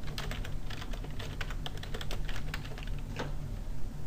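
Typing on a computer keyboard: a quick, uneven run of keystroke clicks that stops a little past three seconds in.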